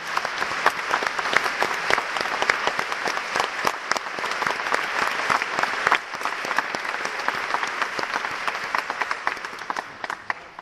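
Concert-hall audience applauding: dense, steady clapping that swells over the first second and holds.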